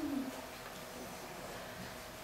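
A person's short, low, wordless vocal sound, like a hum, that fades out in the first moments, followed by quiet room tone with a faint steady hum.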